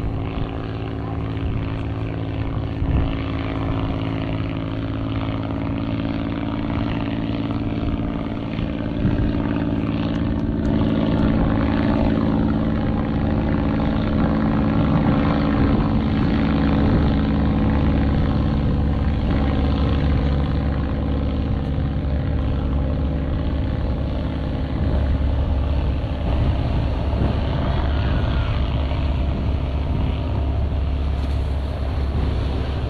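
Propeller airplane engine droning steadily overhead, growing louder about nine seconds in, over a hiss of wind and surf.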